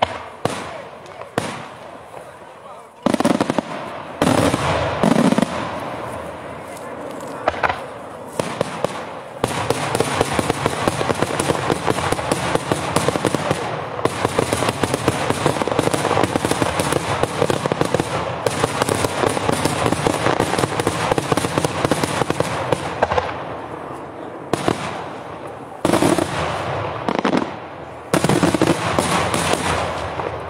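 Daytime fireworks firing. A few separate bangs come first, then from about ten seconds in a dense, continuous crackle of rapid reports lasts some fifteen seconds, and more loud bangs follow near the end.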